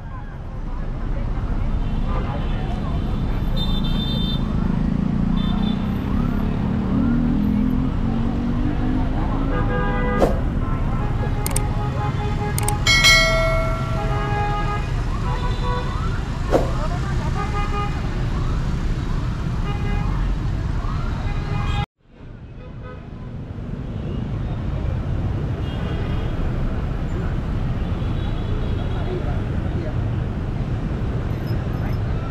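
Busy street traffic of motorbikes and cars running past, with one engine rising in pitch as it pulls away a few seconds in and a vehicle horn honking about thirteen seconds in. Voices of people nearby carry over the traffic.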